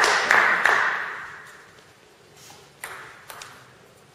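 A table tennis ball being bounced in an even rhythm, about three bounces a second, each tap ringing in a large reverberant hall. The bouncing stops within the first second, and two single taps follow near the end.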